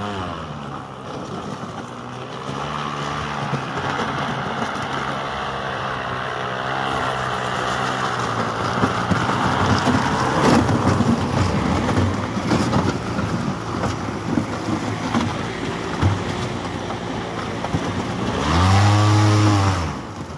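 Electric airboat's caged propeller approaching with a steady pitched hum that grows louder, mixed with the rough noise of its aluminium hull pushing through broken ice. Near the end the propeller revs up and back down in a rising then falling whine as the boat drives up onto the bank, then the sound drops away.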